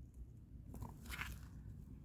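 Faint rustling and scraping handling noises, a few soft brushes about halfway through and near the middle of the second half, as fingers move over the pleated paper element of a used oil filter.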